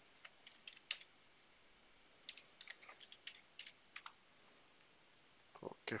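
Faint computer keyboard typing: two short runs of keystrokes, one in the first second and another from about two to four seconds in.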